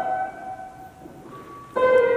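Background music led by piano: a sustained chord fades away through the middle, then a new chord is struck near the end.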